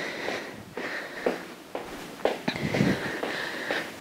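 Trainers stepping side to side on a laminate floor, about two footfalls a second, with a woman's breathing between them.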